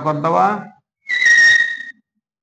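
Chalk squeaking on a chalkboard as a circle is drawn: one high-pitched squeal of just under a second, starting about a second in and falling slightly in pitch.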